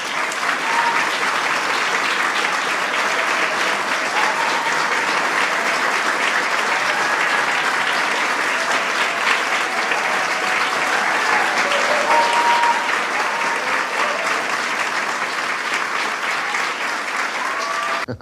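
Steady applause from an audience, with a few faint voices heard through it.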